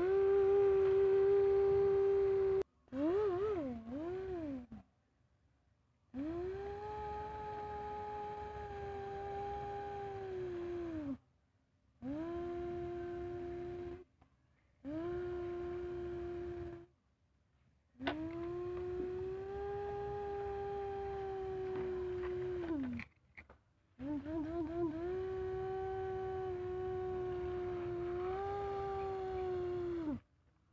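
A person making toy-engine noises with the voice: a string of long humming drones, each sliding up in pitch at the start, holding steady for a few seconds, then dropping away, with short silent breaks between them.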